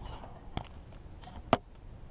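Two short sharp clicks or knocks, the louder about one and a half seconds in, over faint shuffling: handling noise from a hand-held camera being moved under a vehicle.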